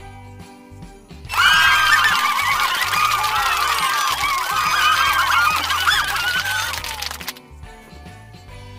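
A loud sound effect of many overlapping honking calls, like a flock of geese, cuts in about a second in and stops abruptly about a second before the end, over quiet background music.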